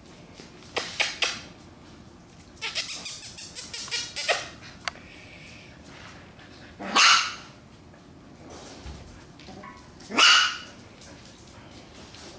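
Young puppies barking: two separate short, high barks well apart, with a few short sharp sounds near the start and a quick rattling run of about a dozen clicks in between.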